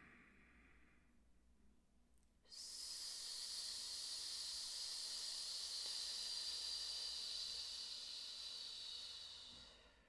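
A long, steady hiss of breath pushed out through nearly closed lips, starting abruptly about two and a half seconds in and tapering off after about seven seconds. It is a resisted exhale in a diaphragm-strengthening exercise, made against a strap cinched tight around the rib cage. A faint in-breath fades out in the first second.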